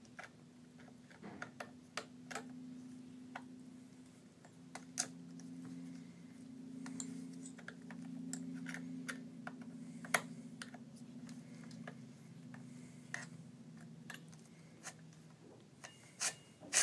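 Scattered small metal clicks and taps of a T-wrench turning a chainsaw's chain-tensioning screw and handling the chain and guide bar, over a faint low hum.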